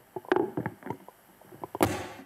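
A string of irregular short knocks and clicks, the loudest near the end, then an abrupt cut to silence.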